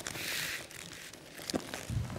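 Quiet handling and movement noises as a person picks a ball up off an exercise mat and stands: a soft clothing rustle, a light click, and a low thud just before the end.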